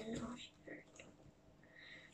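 Faint handling of small plastic toy pieces: a few soft clicks and rustles as doll parts are fitted into a plastic globe base.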